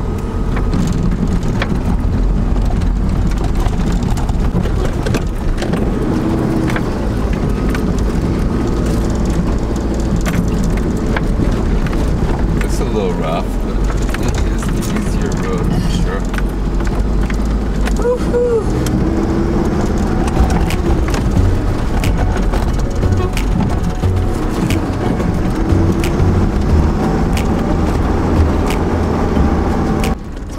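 Heard from inside the cab, a vehicle drives over a rough dirt track: a steady low engine and tyre rumble, with frequent short knocks and rattles from the bumps.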